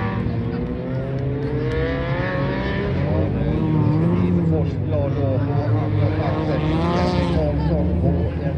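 Several race car engines revving hard through the gears as cars race around the track, their pitches rising and falling over one another.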